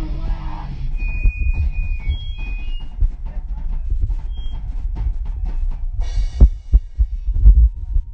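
A rock band playing live in a small room, heard through a phone's microphone. The sung part stops about a second in, leaving heavy low bass and drum thumps with scattered guitar notes and two loud hits near the end.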